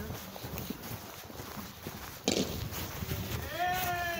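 A sharp knock a little after two seconds in, then a drawn-out, high-pitched voice near the end that falls slightly in pitch, over low rustling of clothing against the phone.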